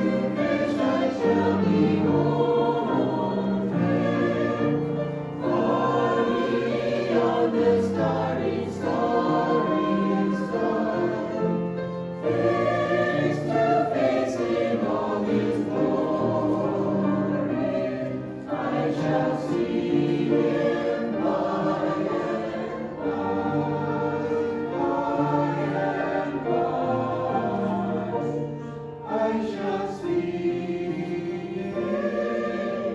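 Mixed-voice church choir singing a hymn in parts, with piano accompaniment.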